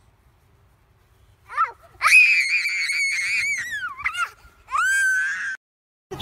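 A young child screaming: a long, shrill, wavering scream that falls in pitch at its end, then a shorter rising wail, after a couple of brief quick cries.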